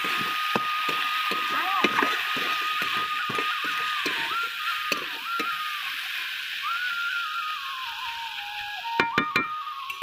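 Background music: a single held melody line that steps up and down in pitch. Under it are irregular short clicks and scrapes of a spatula stirring vegetables in an iron kadai, with a quick cluster of clicks near the end.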